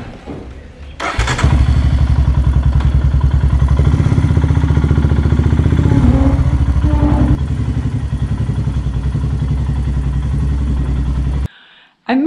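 Royal Enfield Himalayan's single-cylinder engine starts about a second in and then runs with a steady, even pulse, dropping slightly in level a little past the middle. The sound cuts off abruptly just before the end.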